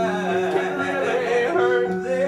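A cabaret singer singing live into a handheld microphone, a wavering, sliding vocal line, over sustained stage-keyboard chords.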